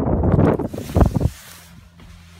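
Loud, irregular low rumble and buffeting on the camera's microphone, which cuts off just over a second in, leaving a faint steady low hum.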